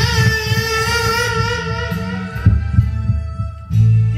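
Karaoke backing music with a steady low bass line, with a long held sung note over it for the first two seconds or so.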